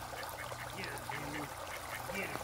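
Raindrops pattering on the surface of a backyard pond, with a duck giving a short quack a little after a second in.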